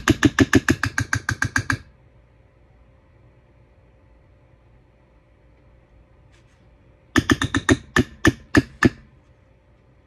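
A spoon tapped rapidly and sharply against the edge of a container, about six taps a second, knocking off a runny, gooey mixture. The taps come in two runs, one at the start and a shorter one about seven seconds in.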